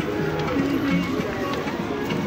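Busy market street: people talking with music playing at the same time, a steady mix of voices and tune.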